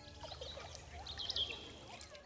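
A few short bird chirps over a faint, steady rush of running water.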